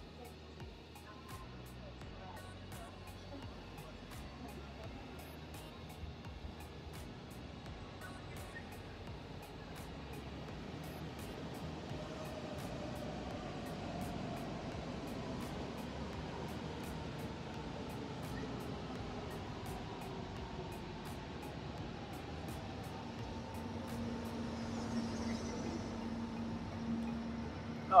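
A DB Regio double-deck push-pull train with a class 182 electric locomotive rolling slowly past, its rumble growing steadily, with falling whines from about halfway and a steady hum near the end. Background music plays throughout.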